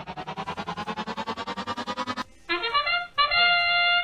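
Competition field sound effects marking the start of a robotics match: a rapidly pulsing electronic tone rising steadily in pitch for about two seconds, then, after a short break, a loud horn-like start signal of held notes near the end.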